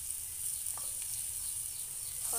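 Boiled green peas and onion–spice masala sizzling steadily in hot oil in a frying pan, with a wooden spatula stirring through them.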